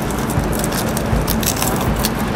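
Nylon webbing strap and hook-and-loop (Velcro) fastener worked by hand on a trail door's webbing cover, an even scratchy rustle as the loop is pulled tight.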